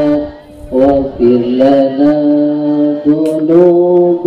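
A male voice chanting a devotional song in long, held notes, with a short break just under a second in.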